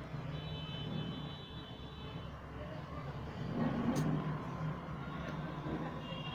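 A steady low outdoor rumble, with a brief louder swell and a sharp click about four seconds in.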